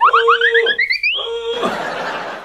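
Synthesized sound effect: a held electronic note under a rapid string of short rising whistle-like glides that climb steadily higher for about a second, followed by a brief hissing whoosh.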